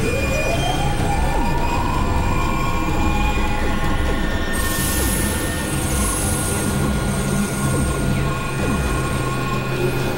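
Experimental industrial noise music from synthesizers: a dense, grinding texture over held low drones, with a tone gliding upward near the start and a burst of bright hiss around the middle.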